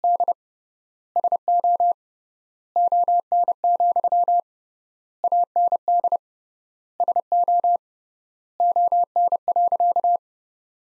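Morse code sent as a single mid-pitched beep tone at 30 words per minute, keyed in short and long beeps. The beeps form six words with pauses of about a second between them, spelling the sentence "And so on, and so on" in code.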